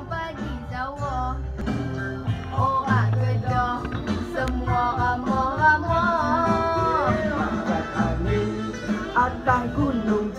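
A pop song with a sung melody over a backing track of steady bass and guitar. The voice holds and bends long notes, with a long held note just before the middle.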